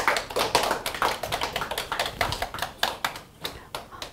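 A small audience applauding: a handful of people clapping irregularly, thinning out near the end.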